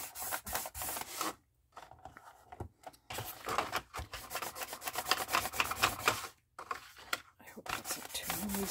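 A foam ink applicator loaded with walnut-stain distress ink is rubbed in quick back-and-forth strokes along the score lines of a manila file folder, giving a dry scratchy scrubbing on the card. There are a couple of short pauses as it is lifted and moved to the next line.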